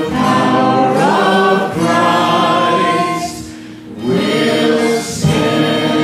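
Worship song sung by a group of voices with acoustic guitar accompaniment: long held notes, one gliding up about a second in, then a short break between phrases before the singing picks up again about four seconds in.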